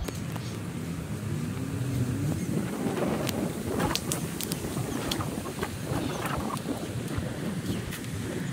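Footsteps on a paved path with irregular rustling and clicks, over steady wind noise on the microphone.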